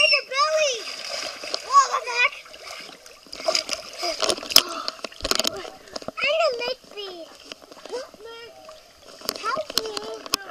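Water splashing and slapping in a swimming pool as children play, with the heaviest splashing in the middle. A child's high-pitched shouts come at the start, about six seconds in and again near the end.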